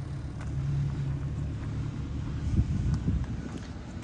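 Steady low rumble of a motor vehicle engine running in the background, swelling briefly past the middle.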